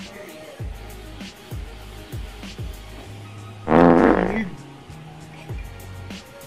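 Background music with a steady beat of about two kicks a second. About four seconds in, a man lets out a loud, rasping vocal sound lasting under a second, a grimacing reaction to a bitter drink.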